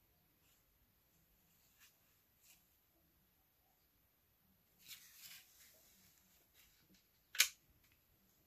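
Quiet handling noises: a few faint ticks, a short soft rustle about five seconds in, and one sharp click near the end.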